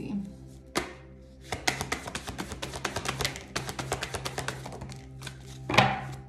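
A deck of tarot cards being shuffled by hand: a quick run of soft card clicks and slaps, with a louder knock of the deck near the end. Soft background music plays underneath.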